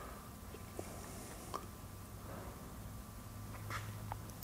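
A few faint taps on a handheld lab scope's touchscreen over a low, steady room hum.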